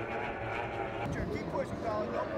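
Outboard engine of a racing tunnel-hull powerboat running at speed, heard at a distance as a steady tone that breaks up about a second in, with faint voices behind it.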